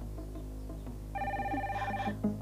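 A telephone rings with a rapid electronic trill starting about a second in and lasting about a second, over soft background music.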